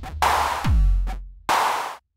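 Sonic Charge Microtonic drum synthesizer playing a sparse electronic drum pattern dry, without the Analog Heat: deep kicks that drop quickly in pitch alternate with noisy snare hits. Playback stops abruptly at the end.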